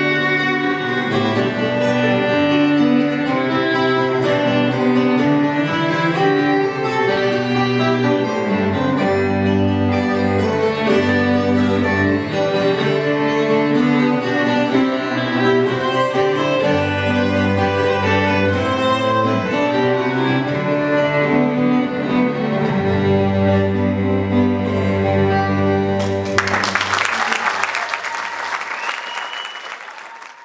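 Instrumental passage of an Irish tune on fiddle and cello over a plucked cittern accompaniment. The music ends about four seconds before the end and audience applause follows, fading out.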